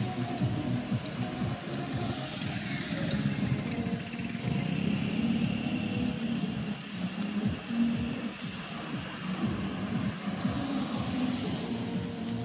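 Background music with street traffic, a motor scooter among it.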